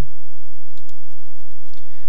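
Computer mouse clicking: a couple of faint ticks over a steady low hum.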